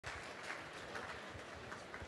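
Quiet ambience of a seated audience in a large hall: a low even hush with faint, irregular knocks and small noises.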